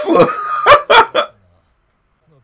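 A man laughing hard in short, gasping bursts that stop abruptly just over a second in.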